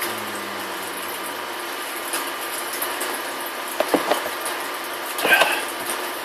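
A person drinking from a plastic cup, with a couple of short swallowing clicks about four seconds in and a brief vocal sound near the end, over a steady hiss.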